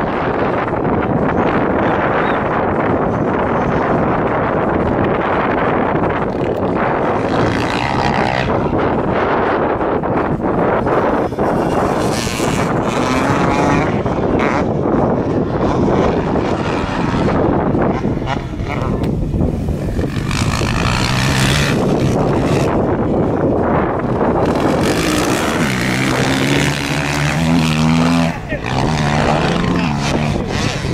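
Motocross bikes racing around the dirt track, their engines revving and changing pitch as riders work through the turns, with wind noise on the microphone. Near the end, one bike's engine comes through plainly, its revs rising and falling.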